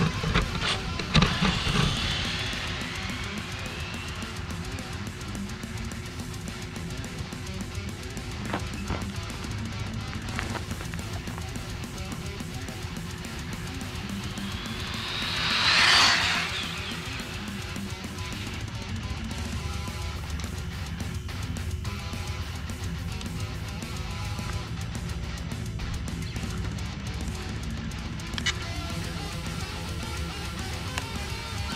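Background rock music with electric guitar plays throughout. About halfway through, a high-speed electric RC car passes close by: its motor whine rises to a peak and falls away, the loudest moment of the music bed.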